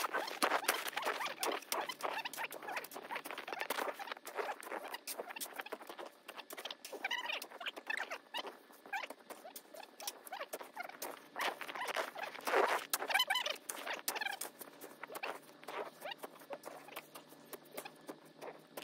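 Plastic snow shovel scraping and chopping into deep snow, played back at five times speed, so the strokes run together into a rapid, dense patter of short scrapes and knocks.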